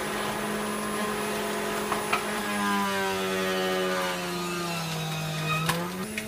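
Electric juicer motor running with a steady hum. About two and a half seconds in, its pitch slowly sinks as beetroot and ginger pushed down the chute load the motor, and a sharp knock comes near the end.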